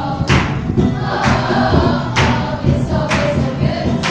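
A group of teenage girls singing together as a choir, with a strong beat landing about once a second.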